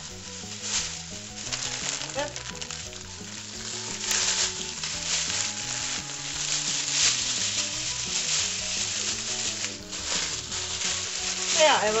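A thin plastic pedal-bin bag crinkling and rustling as it is handled while a cut cake is packed into it, on and off, busier from about four seconds in.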